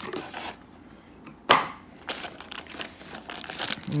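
Foil booster packs and cardboard rustling and crinkling as they are handled and pulled from a box, with one sharp snap about a second and a half in.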